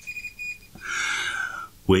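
A high, steady electronic beep lasting about a second, followed by a breathy hiss of about a second.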